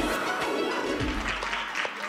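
Hip-hop routine music ends on a final hit, followed by audience applause.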